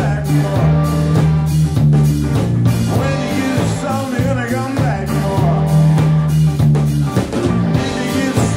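Live rock band playing: distorted electric guitars over a sustained bass line and a steady drum-kit beat.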